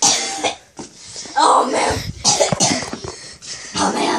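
A child's voice making short breathy noises, several separate bursts with no clear words.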